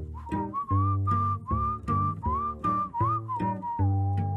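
Background music: a whistled melody over a plucked bass line with a steady beat. The tune slides between notes and settles on one long held note near the end.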